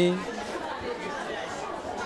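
Indistinct chatter of many children's voices in a classroom, a steady low murmur with no single voice standing out.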